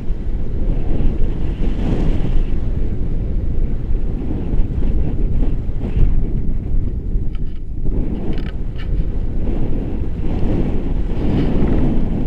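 Airflow buffeting an action camera's microphone in flight under a tandem paraglider: a loud, steady low rumble, with a few faint short ticks in the second half.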